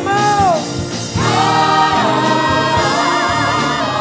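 Gospel choir singing: a held, wavering note bends down and falls away early, and after a short dip the choir comes back in on long sustained chords.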